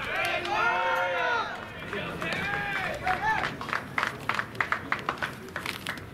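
Loud, drawn-out shouts of voices calling across a baseball field: one long call for about the first second and a half, then shorter calls. After that comes a run of scattered sharp claps or clicks.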